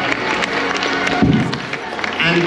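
An audience clapping, a dense patter of many hands, with some cheering and music playing underneath.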